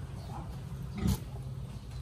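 A pig grunting in its pen, with one short, loud grunt about a second in.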